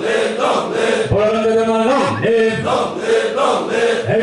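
A hall full of people singing together in unison, slow held notes sung as one chorus.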